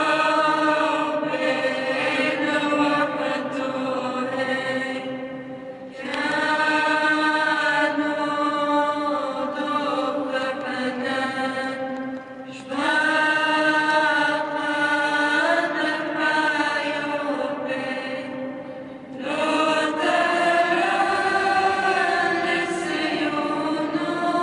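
Aramaic liturgical chant of the Eastern Christian churches, sung in long melodic phrases of about six seconds each with brief breaks between them.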